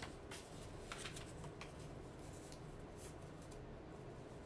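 Faint rustling and crinkling of paper letters being handled, in a few short soft strokes.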